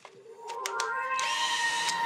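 Parkside cordless drill: a few clicks, then the motor spins up with a rising whine and runs at a steady high pitch.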